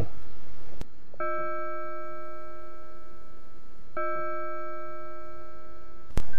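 Musical interlude: a bell-like chime note sounds twice, about three seconds apart, each held steady, over a steady hiss.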